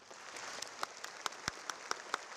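Audience applauding: a steady patter of many hands clapping begins at the start, with single sharp claps standing out from it.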